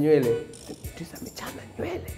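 A man's voice briefly at the start and again near the end, with quieter light clicks between, over faint background music.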